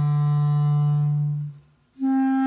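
Background score music: a single low note held steadily, fading out about a second and a half in, followed by a brief silence.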